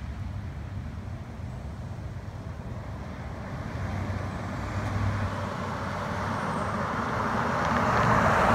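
A Ford E-Series (Econoline) passenger van driving up the street toward the listener. Its engine and tyre noise grows steadily louder as it approaches, loudest near the end as it draws close.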